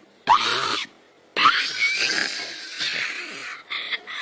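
A young child screaming in a tantrum, in two loud bursts: a short one about a quarter second in, then a longer one of about two seconds.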